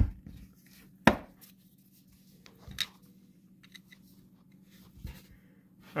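A few faint, scattered clicks and scrapes of a small screwdriver tip picking at a rubber O-ring seated in an aluminum engine casing, over a faint steady hum.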